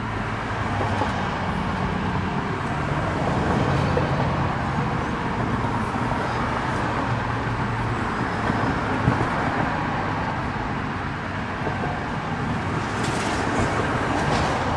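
Steady hum of distant road traffic, an even wash of engine and tyre noise with no single event standing out.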